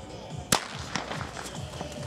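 A starting pistol fires once, a sharp crack about half a second in, sending a line of runners off the start of a track race. A few fainter clicks follow.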